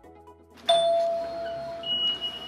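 A chime rings out: one loud, clear ding about two-thirds of a second in that rings on and slowly fades, followed by a higher, thinner tone near the end.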